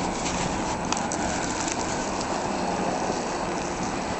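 Blizzard wind blowing steadily, with gusts buffeting the microphone in a low, uneven rumble.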